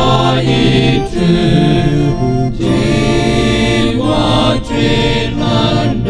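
A small male church choir singing together, holding chant-like notes that move from one to the next in a steady line.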